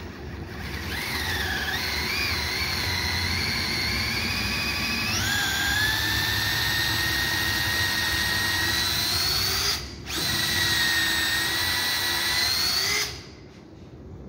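Bosch cordless drill boring holes through wooden boards for wooden dowels. A steady motor whine wavers at first and steps up in pitch about five seconds in. It stops briefly near the ten-second mark, runs again, and cuts off about a second before the end.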